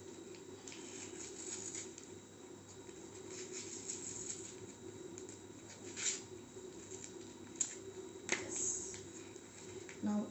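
Paper tape being pulled off its roll and wrapped around rolled newspaper: faint rustling with a few sharp crackles, the loudest about six and eight seconds in.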